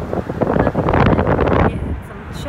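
Wind buffeting a phone's microphone in a moving car: a loud, rough rush that builds about half a second in and falls away just before the end.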